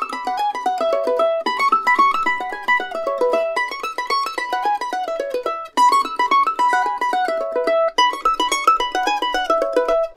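Mandolin lick played high up the neck: a fast run of flatpicked single notes. The same phrase is played about five times, each time on a different budget mandolin, among them a Recording King Dirty 30s and a Kentucky KM 150, with a short break every two seconds or so.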